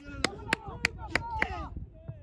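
Rhythmic hand clapping, sharp and evenly spaced at about three claps a second, stopping about a second and a half in, with voices shouting over it.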